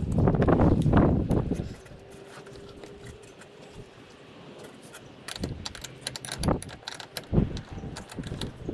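A loud rustling, handling-type noise for the first two seconds. From about five seconds in comes a run of sharp metallic clinks and taps: an open-end wrench and battery cable clamp being worked onto the battery post.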